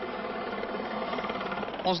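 Aérospatiale Puma helicopter hovering low as it comes in to land, its turbine engines and rotor making a steady, even noise.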